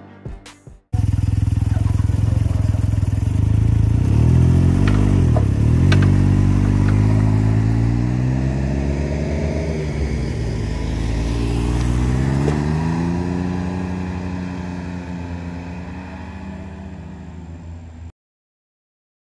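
Three-wheeled motorcycle engines running close by after a second of music: the pitch dips and comes back up as one passes, then climbs steadily as a trike accelerates away, and the sound slowly fades near the end.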